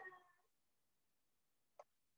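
Near silence: room tone, with a faint pitched sound trailing away in the first half second and one faint short click near the end.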